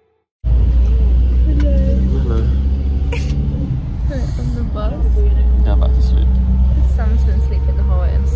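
Steady low rumble of engine and road noise inside the cabin of a moving minibus, starting abruptly about half a second in, with faint voices over it.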